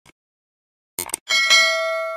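Subscribe-button sound effect: two quick mouse clicks about a second in, then a bright bell ding for the notification bell that rings on and slowly fades.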